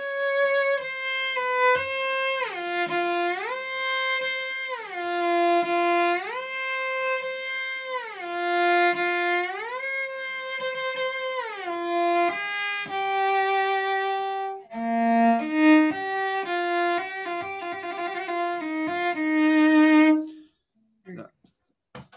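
Cello bowed in a high register, practising a left-hand shift: it slides up and down between two held notes about a fifth apart, five times over, with the glide plainly audible. Then it plays a short phrase of separate notes that steps down, stopping shortly before the end.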